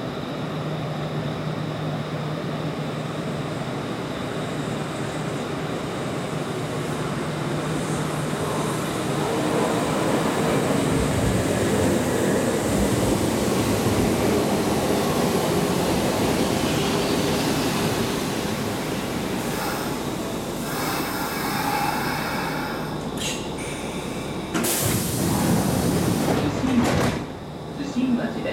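Kintetsu 1000 series three-car electric train rolling into the platform and braking to a stop. Its running noise swells and then eases. Near the end come hissing bursts of air and the doors sliding open.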